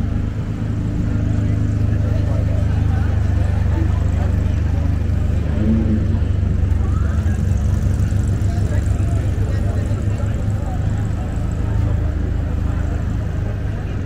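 Steady low rumble with a few faint steady tones in it, of the kind a running engine or machinery makes, under faint chatter from a crowd.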